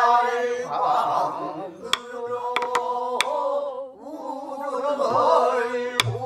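A small group singing a pansori passage together in long, wavering held notes, accompanied by a buk barrel drum: a few sharp stick clicks on the drum around the middle and low drum strokes near the end.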